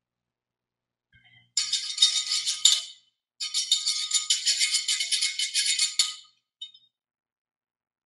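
A hand shaker rattled in rapid strokes, in two runs: one from about a second and a half to three seconds in, a longer one from about three and a half to six seconds in.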